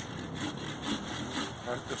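Hand pruning saw cutting through a small tree branch in quick strokes, about three a second. The saw cuts only on the pull stroke.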